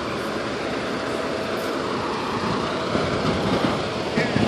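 Fire apparatus diesel engines idling on scene: a steady running noise with a low rumble, with a few small bumps in the second half.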